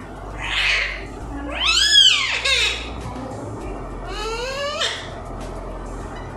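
Alexandrine parakeet calling: a harsh squawk, then a loud call that rises and falls about two seconds in, and a longer rising call near the end.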